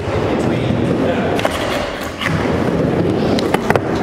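Skateboard with a door-hinge folding deck rolling on a plywood mini ramp, wheels rumbling steadily. Several sharp clacks come from the board and trucks hitting the metal coping, with a cluster of them near the end.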